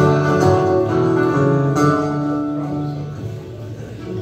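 Two acoustic guitars strumming the opening chords of a song, the chords ringing and easing off toward the end before the vocals come in.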